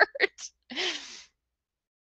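A person's short laugh trailing off into a breathy exhale, with a few brief vocal bursts followed by one longer, airy breath.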